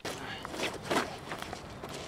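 Rustling handling noise with irregular soft knocks, a couple of louder ones about halfway through, from someone moving about and handling gear close to the microphone.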